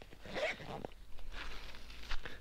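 Faint, irregular rustling and scraping of hands handling gear and fabric on a stopped, loaded motorcycle.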